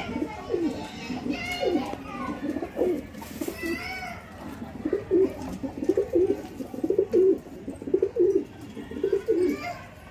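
Domestic pigeons cooing, a steady run of short, low coos that grows busier and louder in the second half.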